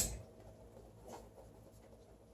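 A sharp click right at the start, then faint scuffing as a dog noses at a small plastic container on the carpet.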